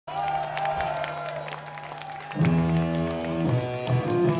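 Live gothic metal band playing in a concert hall, recorded from the audience. Held, sustained tones open the song, then the band comes in louder with fuller chords about two and a half seconds in.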